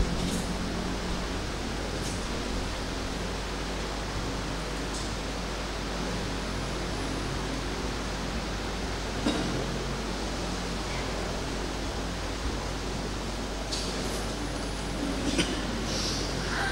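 Steady hiss with a low hum: room tone. A few faint knocks, clustered near the end.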